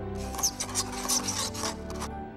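A dry rasping scrape made of a run of quick strokes, lasting just under two seconds, over soft background music with held notes.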